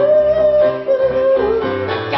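Live song: a male singer holds one long high note that dips slightly near the end, over keyboard accompaniment.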